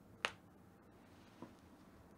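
A single sharp finger snap about a quarter second in, followed about a second later by a much fainter click, over quiet room tone.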